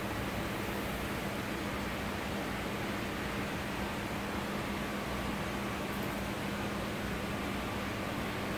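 Steady background noise: an even hiss with a faint low hum underneath, unchanging throughout.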